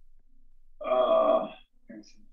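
A man's voice holding a drawn-out "uhh" for just under a second, a hesitation sound before he goes on talking.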